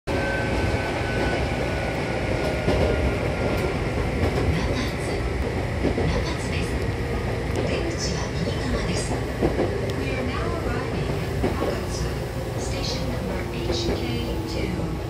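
Interior noise of a Hankyu Kobe Line electric train running, heard beside its closed doors: a steady rumble of wheels on rail with a few faint steady tones above it.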